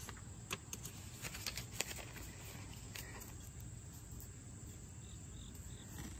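Faint handling of a small spiral-bound paper notebook as its pages are flipped over: a few soft clicks and rustles, mostly in the first two seconds and once more about three seconds in. Insects chirp faintly in the background, most clearly near the end.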